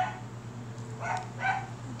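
A dog barking: three short barks, the last two close together, over a steady low hum.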